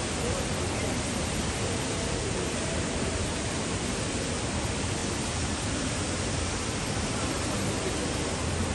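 Steady, even background noise of a busy shopping-centre entrance hall, with faint indistinct voices.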